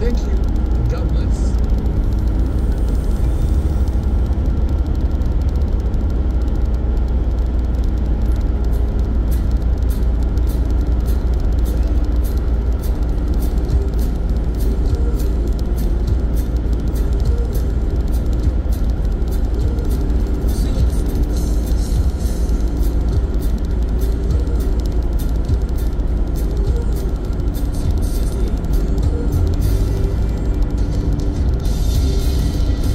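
Steady low road and engine rumble heard from inside a car cruising at highway speed, with background music over it.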